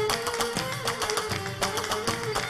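Traditional Gulf Arabic (Kuwaiti) music: a small hand drum beating steady strokes under a held melodic line with plucked-string accompaniment.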